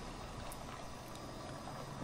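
Faint, steady background noise with a low rumble and no distinct events.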